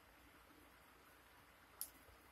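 Near silence: room tone, with one brief click near the end.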